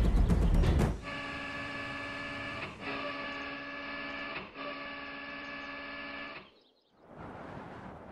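Drum-heavy music ends about a second in. Then an electric actuator motor whines steadily in three runs with two brief breaks, as the missile launcher's mechanism raises the launch tubes and swings their lids open.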